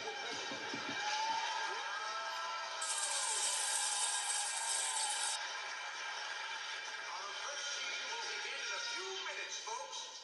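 Cartoon soundtrack music played from a television, with gliding, voice-like tones over steady held notes. A bright high hiss comes in about three seconds in and cuts off suddenly about two and a half seconds later.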